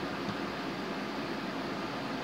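Steady background hiss of room tone, with no distinct events.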